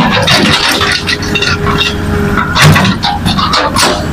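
Hitachi hydraulic excavator working: its diesel engine running under load, with frequent knocks and clatter of rock and soil, and a steady whine through the first half.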